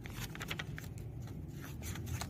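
Small scissors snipping through folded origami paper: several short, quiet cuts as a corner is trimmed off.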